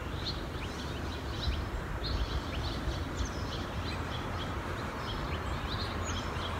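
Songbirds chirping, many short high calls repeating throughout, over a steady low background rumble.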